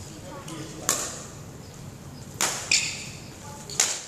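Badminton rackets striking a shuttlecock in a rally drill: four sharp hits, two of them close together about two and a half seconds in.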